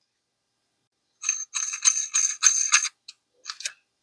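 Metal-on-metal sliding and rattling with a high ringing edge as the ATI Bulldog shotgun's barrel assembly is pushed into the receiver, in several quick strokes starting about a second in. A few light clicks follow as it seats.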